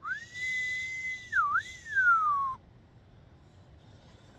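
A person whistling one long clear note, about two and a half seconds long. It rises and holds high, dips sharply once and comes back up, then glides steadily down before stopping.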